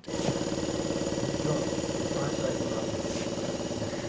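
Small compressor nebulizer switched on and running, a steady buzzing motor hum that starts suddenly, delivering medication through the child's breathing mask.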